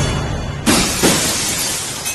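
A car's side window smashed with a metal rod: glass shattering suddenly about two-thirds of a second in, with a second crash just after, over dramatic film music.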